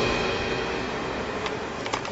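Background music fading out into faint outdoor street noise, with a couple of light clicks near the end.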